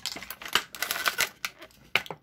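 Packaging being torn and handled to free a small figure stand: irregular crinkles and sharp clicks.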